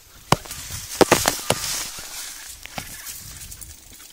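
A mountain bike jolting over an overgrown grassy track: sharp knocks and rattles, bunched about a second in, over a rushing swish of tall grass brushing past.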